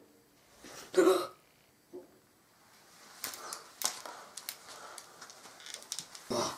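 A single short vocal sound from a child, like a hiccup or grunt, about a second in. It is followed over the last three seconds by a run of faint plastic clicks and rustling as a red toy lightsaber is handled and raised.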